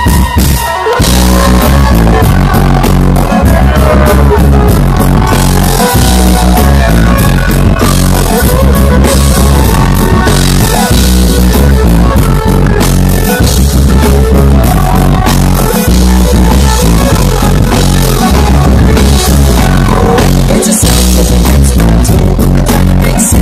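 Reggae rock band playing live, with electric guitar, keyboard and drum kit over a heavy bass line. The recording is loud and dense, with a steady drum beat.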